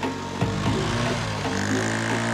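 Background music over a small motorcycle engine running as the bike moves off.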